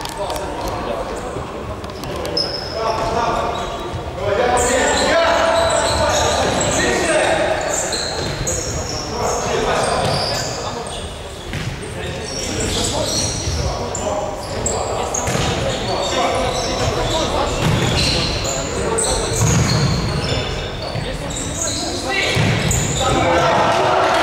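Futsal players' shouts mixed with the thuds of the ball being kicked and bouncing on a hard indoor court, echoing in a large sports hall.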